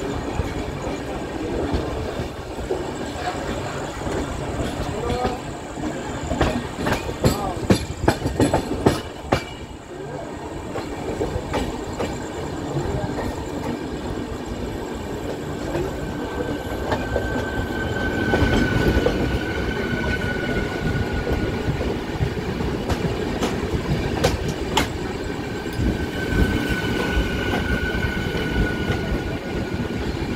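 Passenger train running at speed, heard from an open coach door: steady rumble with wheels clattering over rail joints, in a cluster of sharp clicks a few seconds in. Later it gets louder as a train on the adjacent track approaches and passes, and a steady high whine sounds twice.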